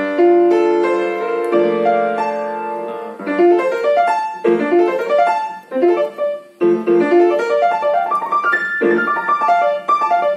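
Yamaha piano playing a chord held for about a second and a half, then fast runs of notes rising and falling: three broken-chord licks in G minor strung together in one phrase.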